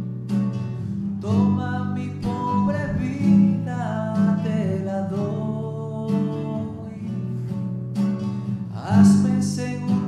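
Acoustic guitar strumming chords while a voice sings a slow hymn over it.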